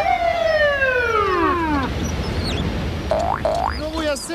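Comedy sound effects: several overlapping whistle-like tones slide downward in pitch over about two seconds, over a low rumble. Short rising, boing-like glides follow about three seconds in and again near the end.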